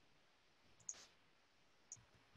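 Two faint computer mouse clicks about a second apart, against near silence.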